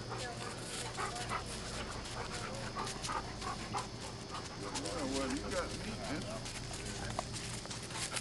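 Faint, indistinct voices and a dog's whines over a steady low hum.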